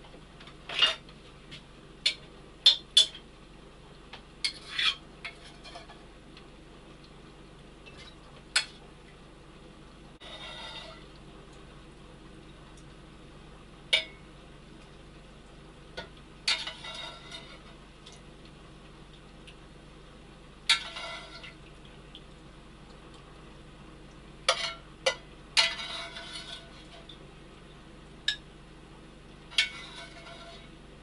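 Kitchenware clattering as soup is transferred from a pot into a glass jar: scattered sharp clinks and knocks of utensils against crockery, with a few short spells of pouring and scraping, over a low steady hum.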